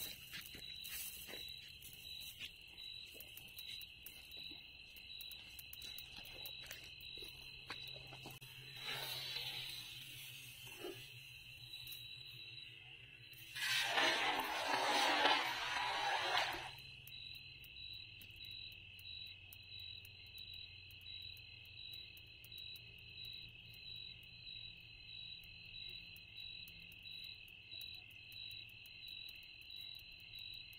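Crickets chirping in a steady, high-pitched pulsing chorus. About halfway through, a cast net lands on the water with a rushing splash lasting about three seconds, the loudest sound here.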